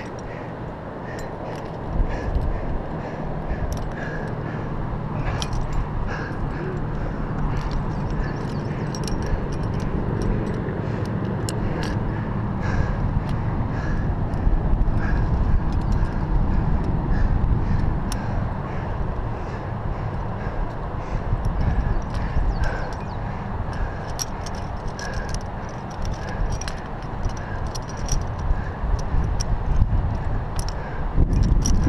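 Wind buffeting a body-mounted microphone, with scattered light metallic clicks of carabiners and quickdraws being handled on the rock.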